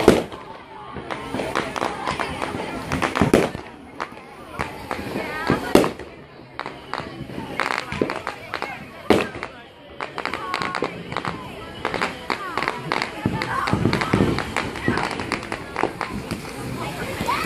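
Fireworks going off: a sharp bang right at the start, then more bangs a few seconds apart, the loudest about three and a half, six and nine seconds in. People's voices chatter in the background.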